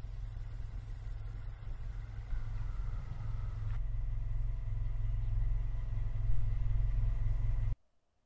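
A steady low rumble with faint thin tones above it, changing suddenly a little before halfway and cutting off abruptly just before the end.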